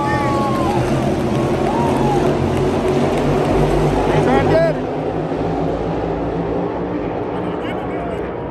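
A field of NASCAR stock cars' V8 engines running at speed around the track, a dense steady roar, with crowd members yelling and whooping over it. A little over halfway through, the sound drops suddenly in level and turns duller.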